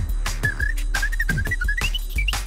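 Live drum and bass: a high, pure-toned whistled melody wavers in short notes over a pitch-dropping kick drum, snare, hi-hats and a sustained deep bass, climbing higher near the end.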